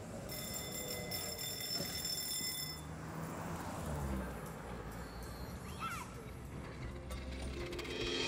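City street sound: low traffic noise, with a car passing about three to four seconds in. A high, steady ringing sounds through the first few seconds.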